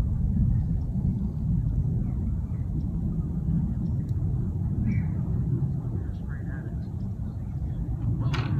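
Steady low outdoor rumble with faint snatches of distant voices now and then.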